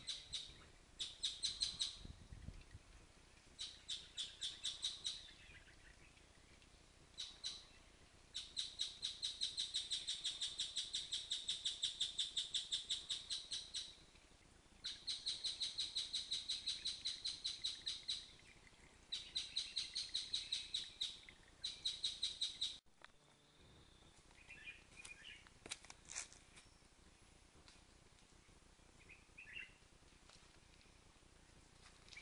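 A bird's rapid, high-pitched chirping trill, given in repeated bouts of one to five seconds. It cuts off suddenly about three-quarters of the way through, leaving only a few faint chirps.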